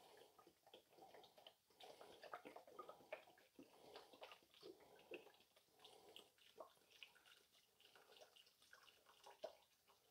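Faint trickling and splashing of seafood stock poured from a carton into a slow cooker already part-filled with vegetables and tomatoes.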